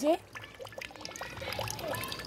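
Faint trickling of water in a clear plastic bottle, with small scattered drip-like clicks.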